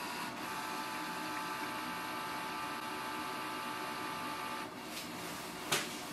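Canon Pixma G4470's automatic document feeder motor running steadily with a whine of several tones as it draws a sheet through to scan it. It stops about three-quarters of the way through, followed by a single click near the end.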